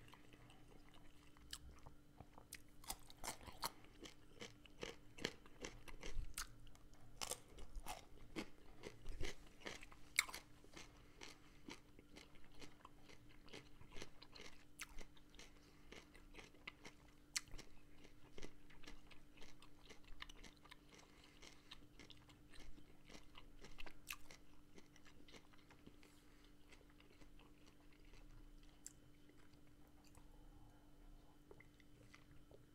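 A person chewing a mouthful of food close to a small microphone: many small wet mouth clicks, thickest in the first ten seconds and sparser after.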